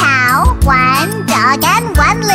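Children's song backing music under a cartoon voice imitating animal calls in long cries that bend up and down in pitch.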